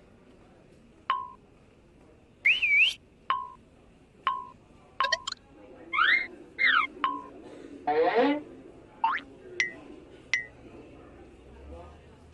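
A string of short whistle-like cartoon sound effects, about a dozen. Most are quick chirps that drop in pitch to a brief held note; a few swoop up and down, and a buzzy sweep comes about eight seconds in.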